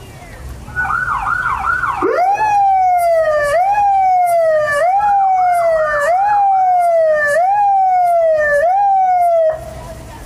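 Electronic emergency-vehicle siren on a parade vehicle. It starts with a rapid warble for about a second, then switches to a repeating cycle that sweeps up quickly and falls slowly, about once a second, and cuts off suddenly shortly before the end.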